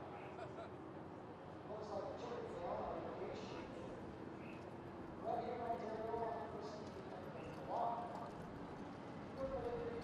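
A harness horse's hooves walking on the racetrack, with faint, indistinct voices of people talking.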